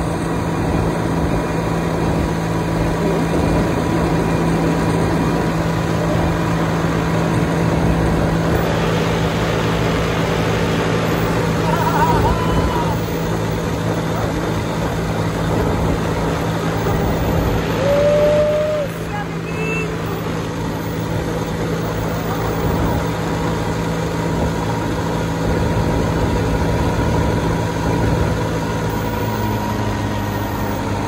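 Piston engine and propeller of a bush plane flying low past the microphone: a steady drone mixed with wind buffeting the mic. Two short voice-like cries stand out, about twelve and eighteen seconds in.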